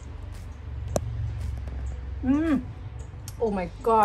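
A woman's voice making two short drawn-out hums while tasting ripe durian, the first rising then falling, the second falling. A low rumble sits underneath, with a single sharp click about a second in.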